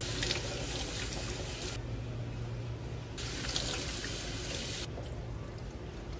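Tap water running and splashing into a stainless steel sink as hair extensions are rinsed and worked by hand under the stream. The splash turns brighter and duller by turns: brighter at first, softer from about two seconds in, brighter again near the middle, then softer toward the end.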